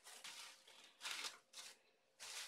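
Faint rustling of a thin plastic supermarket bag being opened out and smoothed flat by hand, in a few short bursts.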